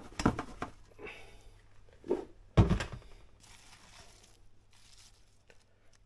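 Light handling sounds and rustling around a stainless steel steam juicer's pan of redcurrants. One heavy, low thump comes a little over two and a half seconds in.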